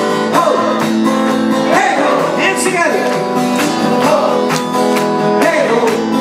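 Steel-string acoustic guitar strummed in a steady rhythm, with a singing voice sliding up and down over it without clear words.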